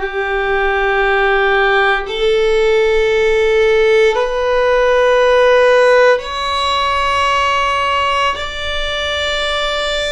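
Solo violin bowing the upper half of an ascending D major scale, one sustained note every two seconds or so, each on a new bow stroke, rising step by step to the top D where the scale ends.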